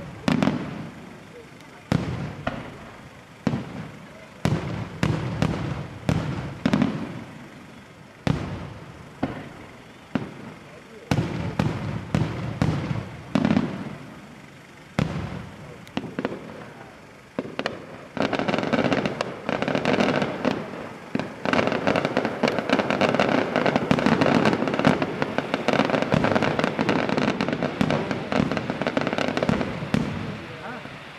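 Aerial firework shells bursting, sharp bangs every second or two, each one fading away. From about eighteen seconds in they merge into a dense barrage of rapid reports and crackle that eases near the end.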